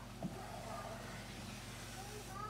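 Dry-erase marker on a whiteboard: a light tap as the tip meets the board about a quarter second in, then a faint rubbing stroke lasting about a second, over a low steady room hum.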